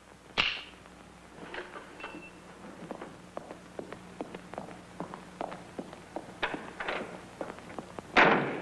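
Footsteps and light shuffling of several people moving about a room: irregular soft taps and knocks, with one louder knock about half a second in.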